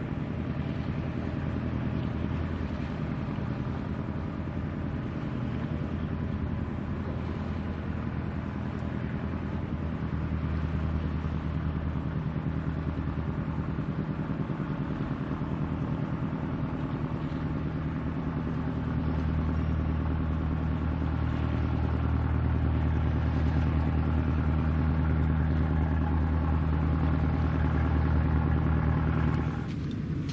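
A boat's engine running steadily on the water, a low droning hum that grows louder as the boat comes closer and then cuts off suddenly at the end.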